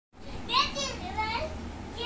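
A young boy's high-pitched laughing squeals, two bursts in quick succession, the second sliding upward in pitch.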